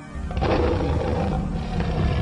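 A lion's roar, sampled into a hip-hop beat over the track's music. It starts about a third of a second in, rough and loud with a deep rumble under it, and carries on.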